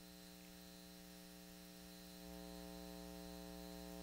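Faint, steady electrical hum on the broadcast audio feed, a buzzy stack of tones under light hiss, growing slightly louder about halfway through.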